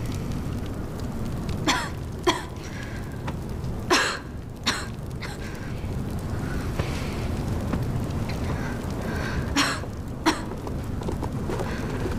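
Campfire crackling in a cave, with a few sharp pops over a steady low rumble.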